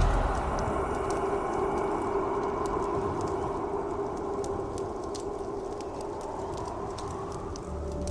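A large open fire burning: a steady rushing noise with scattered sharp crackles, over a faint steady held tone.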